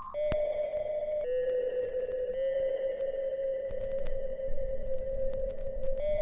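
Background instrumental music of long, soft held tones, each stepping to a new pitch after a second or so.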